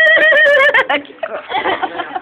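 A girl's loud, high-pitched squealing laugh, wavering for about a second, followed by more broken laughter and voices.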